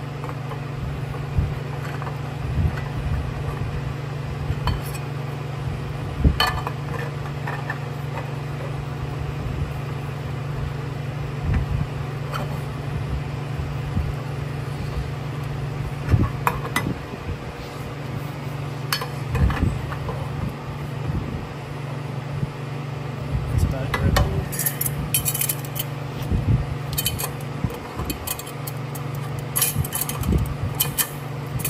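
Stainless steel exhaust pipes and V-band flanges clinking and knocking against each other as they are handled and test-fitted, in scattered sharp clicks that come thick and fast near the end. A steady low hum runs underneath.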